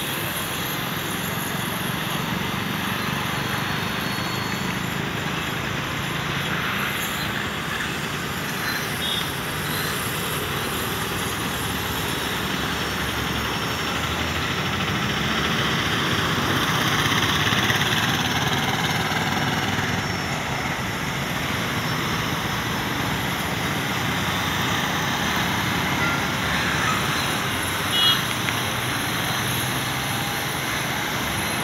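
Steady city road traffic noise from vehicles passing below, swelling a little around the middle, with one short beep near the end.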